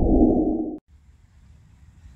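Video-transition whoosh sound effect under the channel logo: a low rushing swell that cuts off sharply a little under a second in, then faint outdoor background noise.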